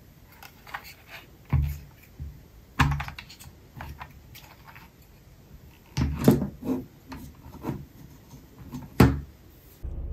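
Hands handling a plastic car phone mount and its packaging: scattered clicks, taps and knocks, with a cluster about six seconds in and a sharp one near the end.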